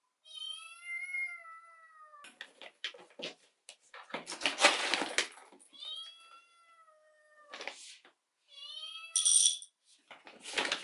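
A tabby kitten meowing three times, each a high call that falls in pitch. In between come crackly rustling and rattling from a bag of coffee beans being handled and beans poured into a glass.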